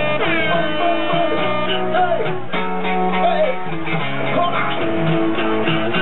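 Live band music with electric guitar to the fore, played at a steady high level, with a falling pitch sweep shortly after the start.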